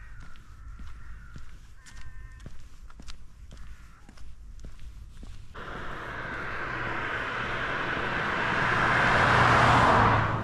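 Footsteps on a paved path, then a car on the road approaching from about halfway through, its tyre and engine noise growing steadily louder until it passes close by near the end.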